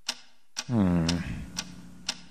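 Mysterious ticking like a clock, a sharp tick about twice a second. A short voice sound with falling pitch comes in a little after half a second.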